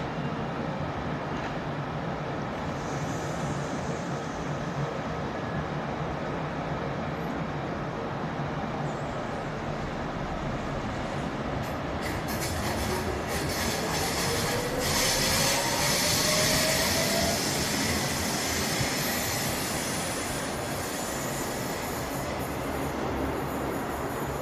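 Electric passenger train running on the rails with a steady rumble. About halfway in, a whine rises in pitch over several seconds while the rail noise grows louder, then eases off.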